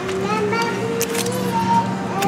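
A toddler vocalising in a drawn-out, sing-song voice without words, rising and holding its pitch, over a steady low hum. A brief crinkle of packaging comes about a second in.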